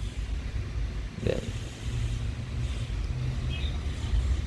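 Low steady background rumble, with a few faint short high chirps near the end.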